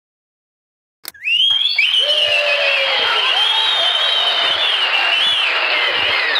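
A click as an antique wooden tabletop radio is switched on about a second in, then loud static hiss with a whistling tone that glides up and wavers as the set is tuned in to a station.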